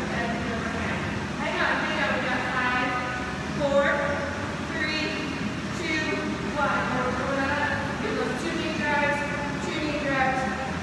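A woman's voice singing, with several long held notes.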